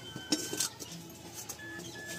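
A few sharp knocks and clinks as firewood sticks are pushed and shifted into the fire of a mud chulha.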